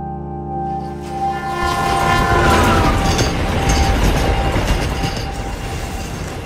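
Held droning tones for the first couple of seconds, one of them sliding down in pitch, under a heavy rumbling noise that swells up and then eases off.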